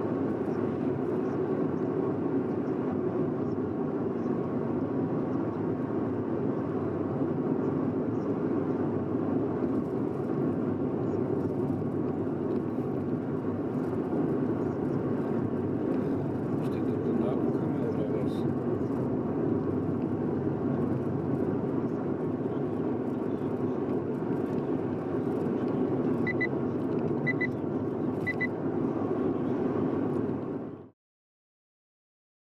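Steady road and engine noise of a car driving at highway speed, heard from inside the cabin. Near the end come three short high beeps about half a second apart.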